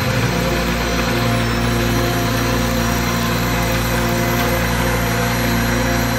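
Cordless drill driving a homebrew roller grain mill, crushing malted grain in a steady run; it cuts off suddenly near the end.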